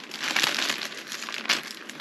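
A plastic mailer bag crinkling and crackling as it is pulled and worked open by hand at its stuck adhesive seal. There is a sharper crackle about one and a half seconds in.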